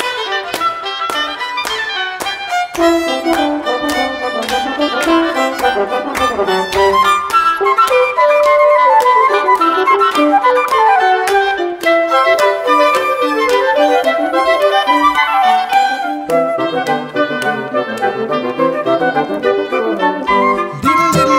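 Instrumental folk tune played by a wind quintet of oboe, flute, clarinet, French horn and bassoon with a fiddle, the melody passing between the instruments over a steady beat.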